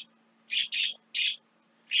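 A small bird chirping: three short, high chirps in quick succession.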